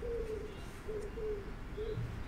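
A bird calling: a few short, low notes all at the same pitch, repeated with short gaps.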